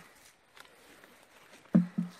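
Faint rustling and handling among ferns and undergrowth while a mushroom is picked, then a short loud vocal sound from a person near the end.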